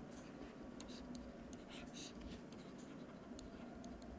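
Faint scratching and tapping of a stylus writing on a pen tablet, in short irregular strokes.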